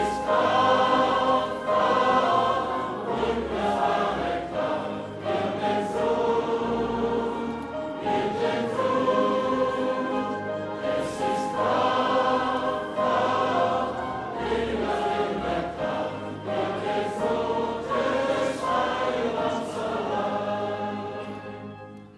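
A large congregation singing a hymn together in long held notes. The singing dies away right at the end as the hymn finishes.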